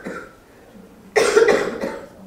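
A person coughing: the tail of one cough at the start, then a louder bout of coughing about a second in that lasts under a second.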